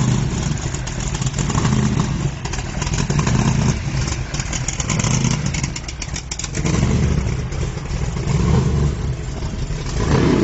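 Supercharged V8 of a drag-race T-bucket hot rod running at low speed, its deep exhaust note rising and falling about once a second.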